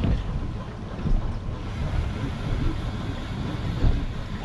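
Wind buffeting the microphone over the steady low hum of an outboard motor and water rushing past the hull as the boat trolls.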